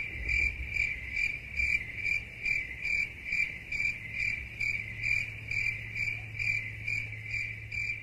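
Crickets chirping in an even rhythm, about two and a half chirps a second, over a low steady hum.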